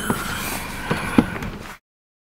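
Car cabin noise with two sharp knocks about a second in, the second louder, then the sound cuts off suddenly near the end.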